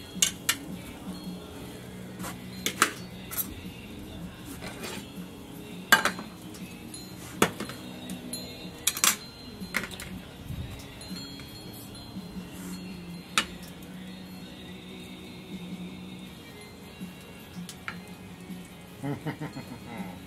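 Utensils and plates clinking as grilled pork tenderloin is served onto a plate: a dozen or so scattered sharp clinks and knocks over a steady low hum.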